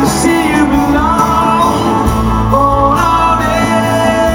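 Rock band playing live in a large hall: acoustic and electric guitars over a drum kit, with a male lead vocal singing a gliding melody line.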